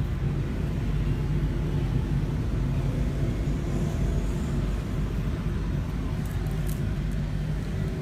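Steady low rumbling hum of background noise, with a few faint light clicks about six to seven seconds in.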